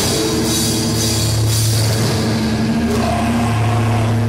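Metalcore band playing live: distorted electric guitars and bass holding low sustained chords over drums, with cymbal crashes recurring about every second or so.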